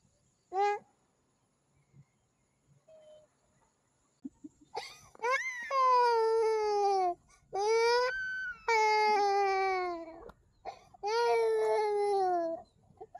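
Toddler crying: a short cry near the start, then from about five seconds in a run of three or four long wails that fall in pitch.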